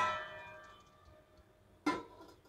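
Stainless steel kitchen vessel knocked, ringing with a bell-like metallic tone that fades over about half a second. A second, shorter clank comes near the end.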